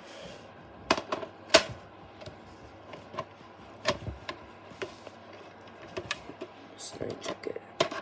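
Hard plastic VHS clamshell case and cassette being handled: a scattered series of sharp clicks and knocks as the case is opened and the tape fumbled with.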